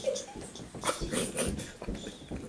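A few soft low thumps of footsteps on a carpeted floor, with brief faint vocal sounds from the room.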